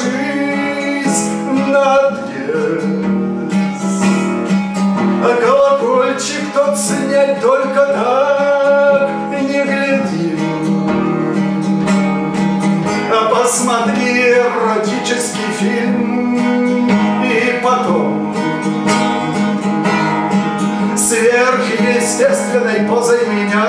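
Acoustic guitar played live, with a man's voice singing a melody over it.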